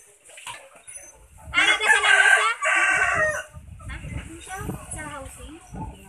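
A rooster crowing once, a loud call of about two seconds with a short break before its last part.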